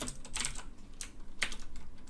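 Computer keyboard typing: a handful of separate, irregularly spaced keystrokes.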